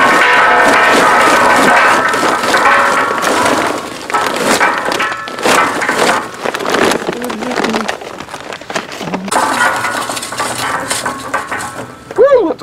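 Background music, loudest at the start, with charcoal briquets clattering as they are poured from a bag into a steel firebox basket, a rapid run of clinks mostly in the middle.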